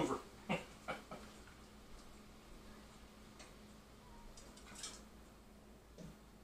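Faint scraping and clinking of a metal ladle in a steel stockpot as tomato sauce is ladled through a plastic canning funnel into glass jars: a few short sounds in the first second and a scrape about five seconds in. A low steady hum runs underneath.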